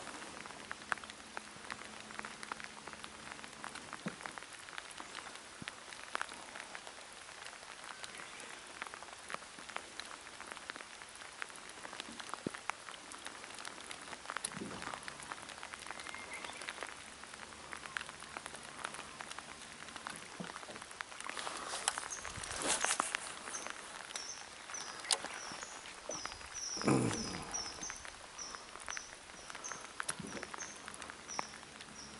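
Steady rain falling on the water, with many separate drop hits close by. Two louder rustling swells come about two-thirds and nine-tenths of the way through, and a run of short high chirps sounds in the last several seconds.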